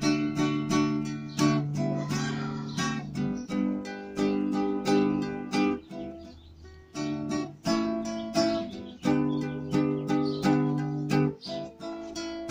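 Acoustic guitar strummed in a steady rhythm, its chords ringing between the strokes, with a brief quieter lull about halfway through.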